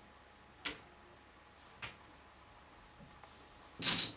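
Poker chips clicking together as a player handles a stack: two single sharp clicks about a second apart, then a louder clatter near the end.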